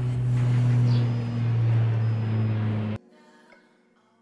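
A loud, steady low mechanical hum like a running motor or engine, dipping slightly in pitch about halfway, that cuts off abruptly about three seconds in. Faint guitar music follows.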